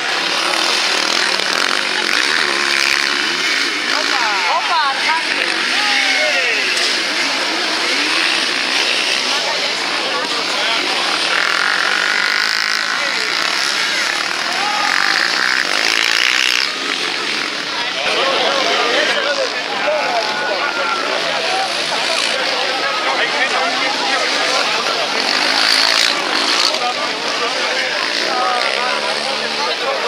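Racing quad bikes (ATVs) running on a dirt track, their engines revving up and down in pitch as they accelerate through the corners.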